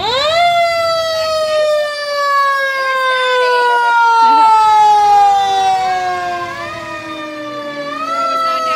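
Fire truck siren wailing as the trucks pass on an emergency call. The pitch climbs sharply at the start, then slowly falls over several seconds, and a fresh rise begins near the end.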